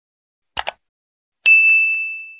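Subscribe-button animation sound effects: two quick mouse clicks about half a second in, then a single bright notification-bell ding about a second and a half in that rings on and slowly fades.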